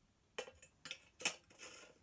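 Metal parts of an old oil lantern clicking and clinking as they are handled and fitted together: several separate clicks, the loudest a little past a second in, then a brief scraping rub near the end.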